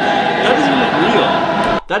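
Loud chanting from a massed stadium crowd of football fans, with a steady droning tone held over it. It cuts off abruptly just before the end.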